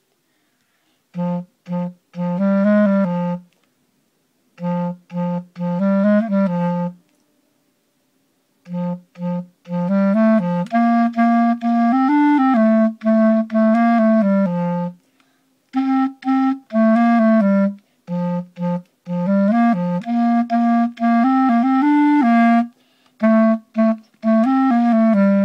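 Solo clarinet playing a melody low in its range, in phrases of short, separated and repeated notes broken by brief pauses.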